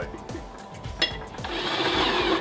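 Cordless drill driving a mounting screw into a metal light-fixture back plate, its motor starting about one and a half seconds in and running through the end, over background music.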